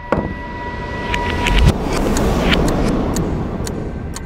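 A rushing cinematic whoosh swells to a peak a little under two seconds in and then holds. Several sharp clicks are scattered through it.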